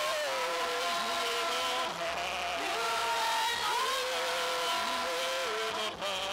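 Live gospel worship singing: voices hold long, sustained notes, each sliding up into its pitch, over a band's low bass notes.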